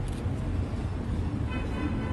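Steady low rumble of street traffic, with faint voices from the people around; a man's voice comes in near the end.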